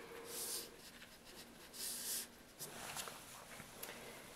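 Dry watercolour brush dragged across rough paper in two short brushing strokes, about half a second and two seconds in, followed by a few small clicks near the end.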